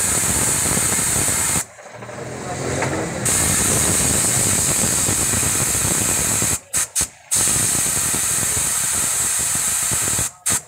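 Spray from a hose nozzle hissing steadily, aimed at a motorcycle engine. It stops once for about a second and a half near two seconds in, then is cut three times in quick succession about seven seconds in, as the trigger is released and squeezed.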